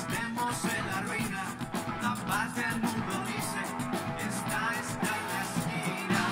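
Live Latin funk band playing: electric guitar over timbales and percussion, with a steady driving beat.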